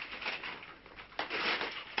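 Grocery packaging rustling as items are lifted out of a shopping bag, louder from about a second in.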